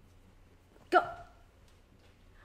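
A woman says one short, sharp word, "Go," to shoo a cat, about a second in; otherwise quiet room tone.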